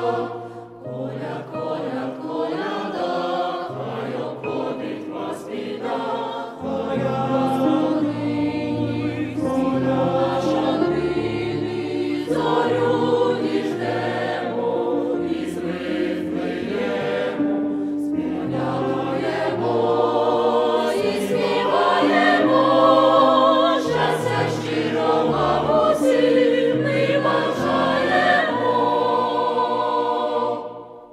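A choir singing a Ukrainian Christmas carol (koliadka) over an instrumental accompaniment with a bass line that moves in held steps.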